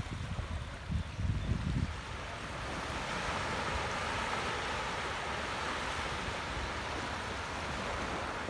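Surf washing onto a sandy beach, with wind buffeting the microphone during the first two seconds. From about three seconds in, the wash swells into a steady rush.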